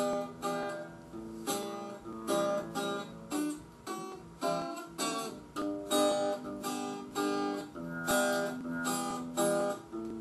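Acoustic guitar strummed in a steady rhythm, about two to three strokes a second, with the chords ringing between strokes. This is the song's instrumental introduction, with no singing yet.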